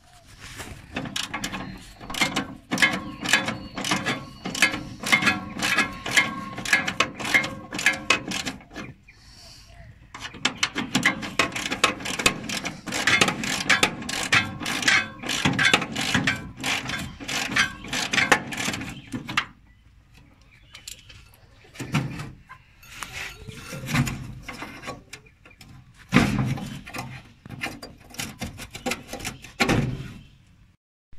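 Ratchet wrench on a socket extension clicking rapidly as the radiator's securing bolts are wound out. The clicking comes in two long runs with a short pause about nine seconds in, then in shorter, sparser spells near the end.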